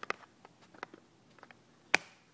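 Scattered light clicks and taps on hard surfaces, with one sharp click near the end.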